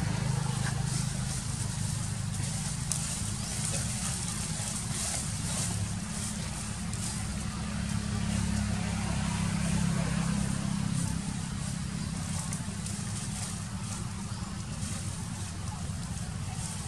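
Steady low rumble with an even hiss over it, outdoor background noise, with a few faint clicks.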